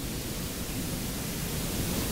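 Steady, even hiss with nothing else in it: the background noise of the recording.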